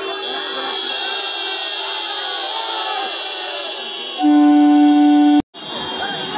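A crowd's shouting voices over a steady high-pitched electronic buzzer tone; about four seconds in, a loud single-note train horn blast lasting just over a second, cut off abruptly.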